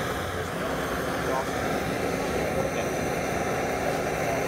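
Handheld blowtorch burning steadily with its flame held against a board: a steady hiss.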